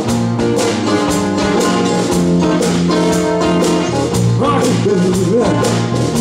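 Live band playing a blues number: a steady drum beat under bass, acoustic guitar and saxophone.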